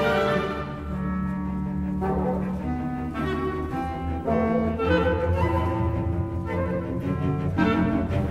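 Orchestral music with bowed strings and brass playing a slow melody in held notes, dipping quieter about a second in and growing fuller again around five seconds in.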